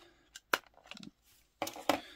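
Clear plastic blister tray clicking and crackling as a diecast model car is pulled out of it. There are a few sharp clicks, the loudest about half a second in and two more near the end.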